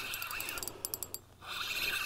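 Spinning reel on an ice rod being cranked against a hooked fish, its gears ticking as line is wound in, with a run of quick clicks near the middle.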